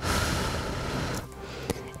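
A breathy rush of air straight onto a headset microphone, a single exhale lasting about a second that fades out, with faint background music underneath.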